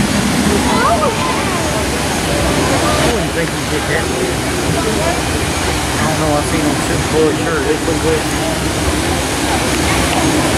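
Steady rushing of water pouring down the Daredevil Falls log flume's waterfall chute, with people's voices chattering over it.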